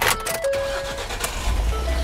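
Ford pickup truck's engine being started: a click and cranking, then the engine catches with a low rumble about a second and a half in.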